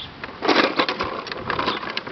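Hard plastic wheels of a child's ride-on tricycle rolling on asphalt as it turns, a rough, rapid rattling clatter that starts about half a second in.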